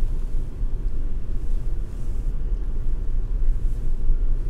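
Steady low rumble of a Volvo XC40 B5's turbocharged four-cylinder engine idling, heard from inside the cabin.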